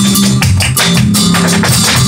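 Live flamenco: a guitar playing chords under a run of rapid, sharp percussive strikes, about five a second, from the dancer's footwork and the cajón.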